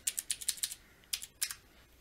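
Typing on a computer keyboard: a quick run of keystrokes, then a few more after a short pause.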